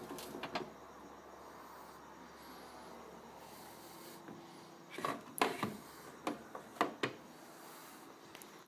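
Light clicks and knocks from a hand handling the plastic body and crank handle of a Sun-Mar Compact composting toilet, coming as a quick cluster of about half a dozen between five and seven seconds in, over a faint hush.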